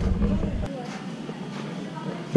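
Faint voices over the low background noise of a large hardware store.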